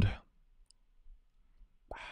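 The tail of a man's spoken word, then near quiet broken by two faint short clicks about half a second and a second in.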